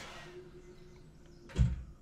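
A door shutting: a single heavy thud about one and a half seconds in, after a faint steady hum.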